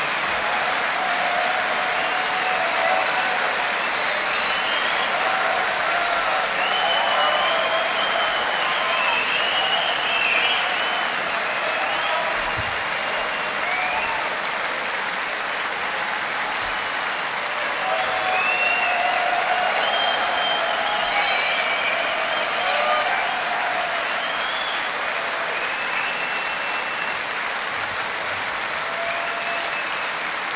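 A large concert audience applauding steadily, with cheering voices rising over the clapping.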